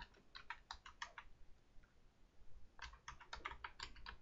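Faint computer keyboard typing: two short runs of keystrokes, one near the start and one in the second half, with a pause between.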